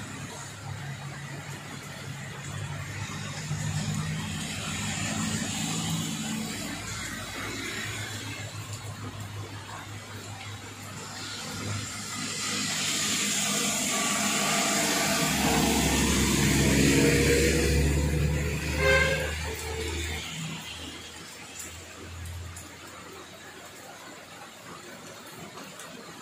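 Steady heavy rain falling. Partway through, a heavy truck drives past on the wet road: its engine rumble and tyre hiss swell up, peak, then fade.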